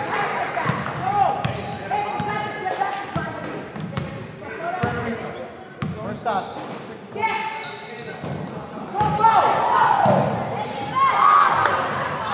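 A basketball being dribbled and bouncing on a hardwood gym floor, a series of sharp knocks echoing around the large gym, with voices of players and spectators.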